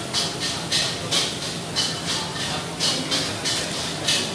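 Busy food-court background noise: a steady din broken by a run of short, sharp hisses, two or three a second.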